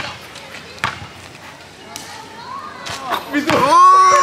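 A basketball dribbled on an asphalt court: a few sharp bounces about a second apart. Near the end a man's loud, drawn-out "oh" takes over as the shot goes up.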